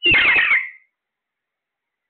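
A single loud, harsh squawk from an Alexandrine parakeet, about half a second long, its pitch falling, right at the start.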